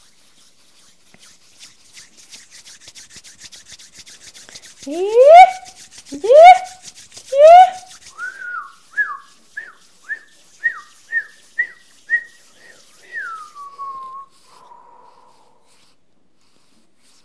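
Hands rubbed briskly together, then three loud rising vocal whoops, followed by a run of short falling whistled notes at about two a second that ends in one long falling whistle.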